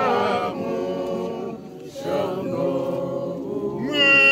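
A group of voices singing together without accompaniment, holding long notes, with a short break between phrases about halfway through.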